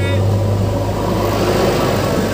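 An engine running, with a steady low hum under a swell of broad noise through the middle.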